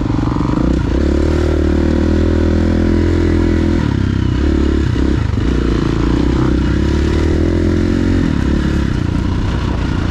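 KTM 350 EXC-F's single-cylinder four-stroke engine running under load along a dirt trail, heard from on the bike. The revs drop and pick up again around the middle and once more near the end, as the throttle is rolled off and back on.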